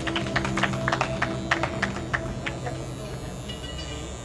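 Electric hair clippers buzzing steadily, with a dense run of sharp clicks over it that slows and fades out over the first three seconds.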